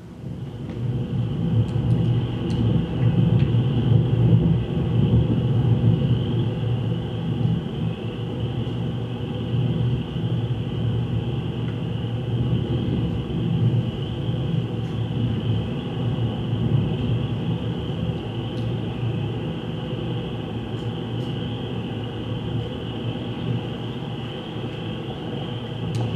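A field recording played back as an electroacoustic piece: a dense, steady low rumble with a constant high band of sound above it. It fades in over the first second and then hardly changes.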